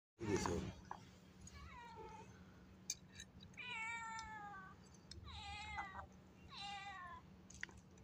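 A knock at the start, then four long, meow-like animal cries, each sliding down in pitch, spaced about a second apart.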